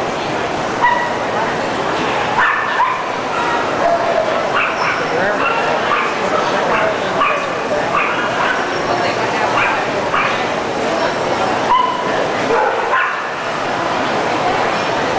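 Dogs barking in short, high calls, many times, over the steady chatter of a crowded hall.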